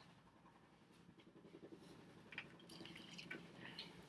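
Near silence, then faint rustling and a few light clicks that build over the last three seconds as a person moves back toward the camera.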